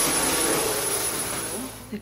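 Dyson Cyclone V10 cordless stick vacuum running: a rush of suction with a steady high whine, easing slightly before it cuts off near the end.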